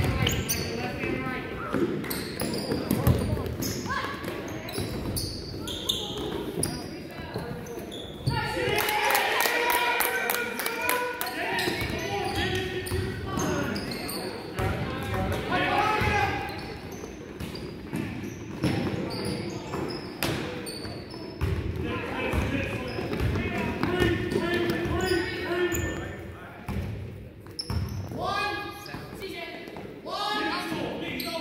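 Basketball being dribbled on a hardwood gym floor, with repeated sharp bounces. Voices of players and spectators carry through the echoing gymnasium, loudest in the middle stretch.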